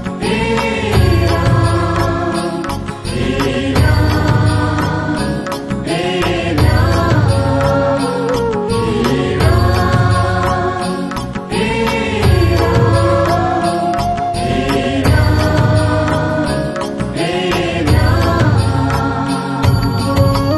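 Hindi devotional Ram bhajan: voices chanting a short repeated phrase, recurring about every two seconds, over music with a steady low beat.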